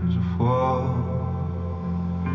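Acoustic band music played live: held low guitar and bass notes, with a long sung note coming in about half a second in.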